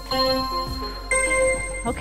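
Electronic interval-timer countdown beeps: one beep, then about a second later a higher, longer tone marking the end of the interval.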